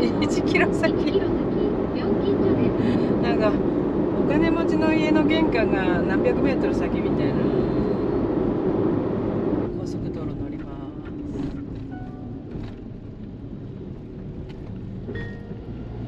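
Road and engine noise heard inside the cabin of a Daihatsu Atrai kei van cruising on an expressway. About ten seconds in it drops and turns duller as the van slows for a toll gate.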